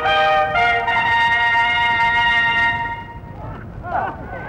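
Trumpet fanfare: a few quick notes, then one long held note that fades out about three seconds in.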